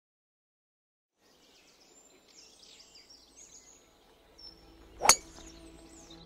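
Faint outdoor birdsong, then a single sharp crack a little after five seconds, the strike of a golf club on a ball. Soft sustained music tones come in just after it.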